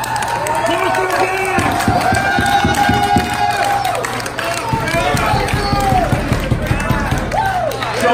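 A man's voice through the PA, giving long, wavering held yells, over two runs of rapid bass drum strokes from the drum kit during a band soundcheck.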